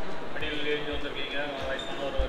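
A man speaking into a handheld microphone, with a few short dull low thumps under his voice.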